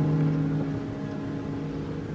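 Grand piano's final chord ringing out and slowly fading as the song ends.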